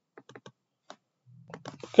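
Computer keyboard typing: a scatter of light, separate keystrokes.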